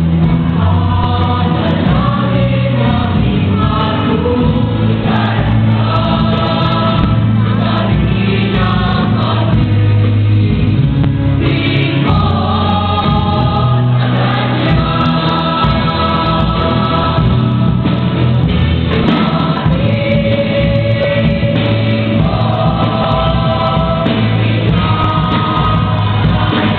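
Mixed youth choir of young men and women singing a Marian hymn in unison and parts, amplified through microphones, with sustained phrases over a steady low accompaniment.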